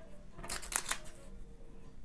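Craft knife blade drawn through a sheet of paper along a stainless steel ruler on a cutting mat: a few short, sharp strokes about half a second in.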